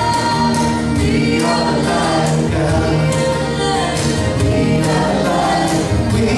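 Live acoustic band music: a woman and a man singing together over strummed acoustic guitars in a steady rhythm.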